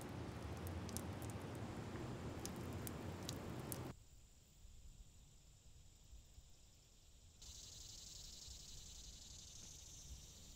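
Faint outdoor ambience: a low rumble with a few faint ticks, which cuts off suddenly about four seconds in to a quieter bed. About two-thirds of the way through, a steady high chirring of insects sets in.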